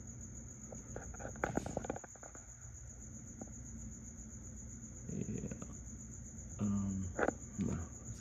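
A steady, high-pitched pulsing trill runs throughout, like an insect's. Scattered light taps and rustles of handling sit over it, clustered about a second and a half in and again near the end.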